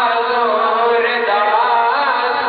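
A man's voice chanting an Islamic devotional recitation into a microphone, in long wavering melodic lines. A steady low tone runs underneath.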